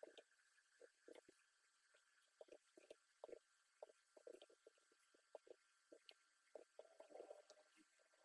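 Faint computer keyboard typing: short, irregular key taps, a few a second.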